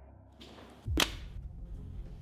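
A single quick whoosh about a second in, sweeping up in pitch into a sharp swish: a film transition sound effect.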